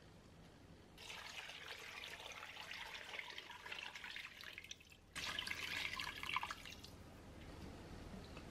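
Water poured into a stainless steel electric pressure cooker pot over chunks of beef. It comes in two pours: a steady one starting about a second in, then a short break and a louder second pour a little past the middle.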